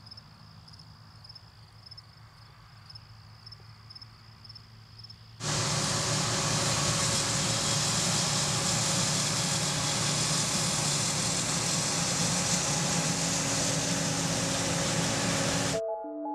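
Crickets chirping in a steady pulsing trill. About five seconds in, a sudden cut to a John Deere combine harvester running loud as it picks up and threshes a windrow of grain, a dense mechanical din over a steady engine drone, which cuts off abruptly just before the end.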